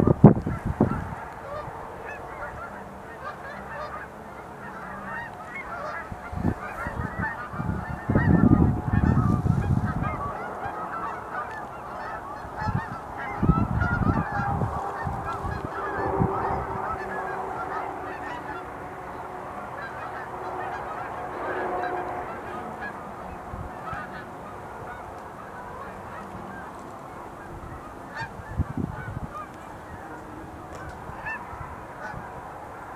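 A large flock of geese honking, with many overlapping calls all the way through. A few low rumbles come and go in the first half.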